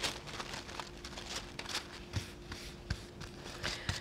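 Natural tissue paper crinkling and rustling with quick irregular crackles as it is handled by hand, unfolded and smoothed flat.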